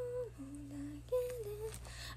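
A young woman humming a tune softly to herself with her mouth closed: a few held notes, stepping down to a lower note and back up, the last one sliding down at its end.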